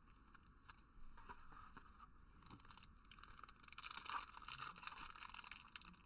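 A Transformers TCG booster pack's wrapper being handled and torn at. It is faint rustling at first, then louder crinkling and tearing from about two-thirds of the way in, as the wrapper proves tricky to open.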